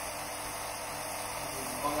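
A small 24 V geared DC motor running steadily, its output shaft turning slowly at about 48 rpm.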